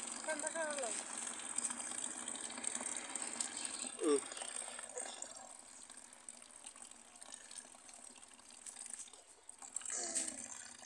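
Water running from an outdoor tap in a thin stream into a plastic bucket, a steady splashing that grows softer after about five seconds.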